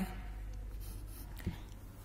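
Faint scratch and rustle of a pen tip and hand moving over a paper workbook page, with a small tap about one and a half seconds in.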